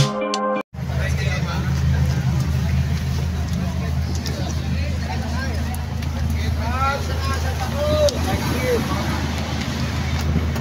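Electronic music with a beat cuts off under a second in, giving way to the steady low rumble of a vehicle running, heard from inside its cabin.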